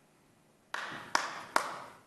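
Three sharp knocks about 0.4 s apart, starting under a second in, each trailing off in room echo.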